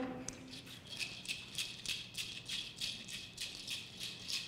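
A hand rattle shaken in a steady rhythm, about three to four shakes a second, starting about a second in.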